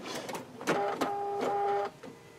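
Bernina sewing machine's automatic thread cutter working: a click, then a steady motor whir of about a second that stops abruptly near the end.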